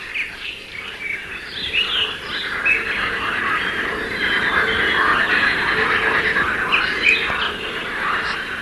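A dense chorus of many birds chirping and squawking, a jungle bird soundscape on a cartoon soundtrack, thickening after the first couple of seconds.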